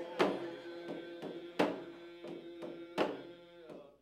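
A hand-held frame drum struck slowly, three beats about a second and a half apart, under singing with long held notes. The song fades out near the end.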